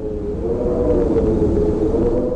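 A video game sound effect: a rumbling whoosh with a steady hum inside it, swelling up to a loud peak.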